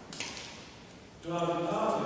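A man's voice chanting a held, intoned line in a reverberant church, beginning about a second in after a short pause; the pitch steps up near the end. A brief hiss comes just after the start.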